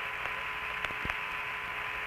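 Open radio channel from the Apollo 15 air-to-ground voice link between transmissions: steady, narrow-band static hiss with a faint steady tone, and a couple of faint clicks about a second in.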